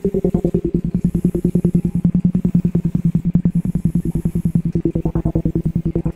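Layered loop music played back from a Boss RC-505 loop station: a fast, even pulse over a low, steady drone, with a brief brighter swell about five seconds in.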